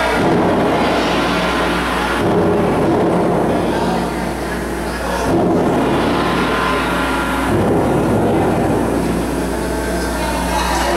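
Loud, dense noise with an engine-like rumble, played over a PA as part of a wrestler's entrance music. It comes in four sections of about two and a half seconds, each starting abruptly.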